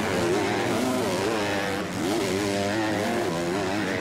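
Motocross bike engines racing on the track, their pitch rising and falling again and again as the riders work the throttle.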